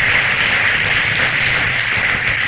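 Live audience applauding, a steady even clatter as loud as the speech around it, heard from an old vinyl LP recording.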